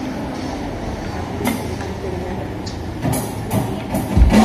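Steady background noise of a café between songs, with a few short bright sounds near the end just before the band starts playing.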